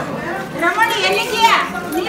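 Several people's voices talking over each other, some high-pitched, with a pitch sweeping up and down about halfway through.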